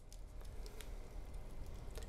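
Quiet room tone: a low steady hum with a few faint scattered clicks and ticks.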